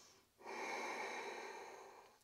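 A woman's long audible exhale, starting about half a second in and tapering off over the next second and a half.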